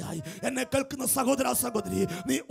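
A man preaching fast and emphatically in a raised voice into a handheld microphone, heard through a PA, with short syllables in a quick, rhythmic run.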